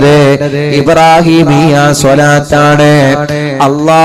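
A man's voice chanting in a drawn-out melodic style, the sung delivery of a Malayalam religious speech, over a steady low drone.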